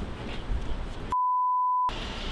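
A single censor bleep: a steady pure beep of just under a second that starts about a second in and replaces all other sound while it lasts, after light outdoor street noise.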